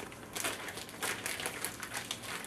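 Plastic zip-top bag holding duck legs and marinade crinkling and rustling in irregular bursts as gloved hands roll it over and work it.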